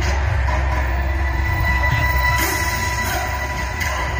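Music with a deep, steady bass and long held high tones, and no distinct beats or hits.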